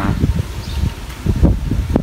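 Low, uneven rumbling buffets on the microphone, with a short sharp click near the end.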